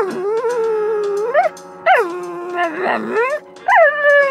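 A dog howling in long, drawn-out calls, a 'talking' yowl: about three calls, each swooping up in pitch and then sliding down and holding a wavering note.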